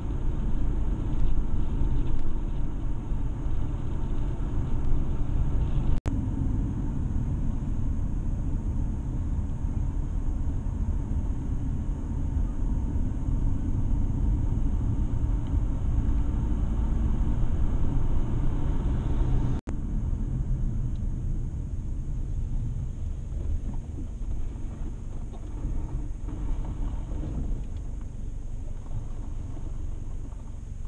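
Steady low rumble of a car driving, heard from inside the cabin: engine and tyre noise on the road. The sound cuts out for an instant twice.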